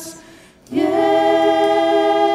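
Worship singers' voices holding one long note together. It comes in about two-thirds of a second in, after a brief gap.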